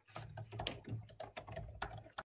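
Typing on a computer keyboard: a quick run of irregular key clicks over a low, steady hum.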